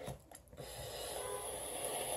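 Faint, steady hiss of an e-cigarette drag: air drawn through a vape atomizer as its coil fires, starting about half a second in.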